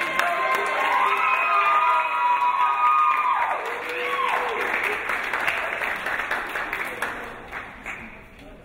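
Audience clapping and cheering, with long held shouts that drop in pitch partway through. The clapping dies down near the end.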